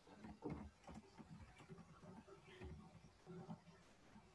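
Near silence: a faint, muffled voice in the background, with a few light knocks.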